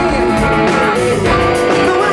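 Live band playing funk-blues rock: an electric guitar line on a Gibson Les Paul Goldtop with bent, gliding notes over bass and drums.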